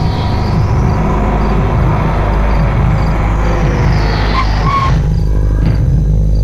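Film background score, a low rumbling drone with a faint regular tick, laid over the engine of a car driving slowly up a street. Near the end the rushing noise thins out and the music carries on alone.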